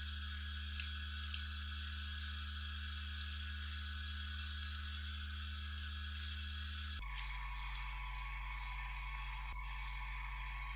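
Steady low electrical hum and hiss from the recording chain, with a few faint computer clicks from mouse or keys as input values are entered. The hum changes pitch abruptly about seven seconds in.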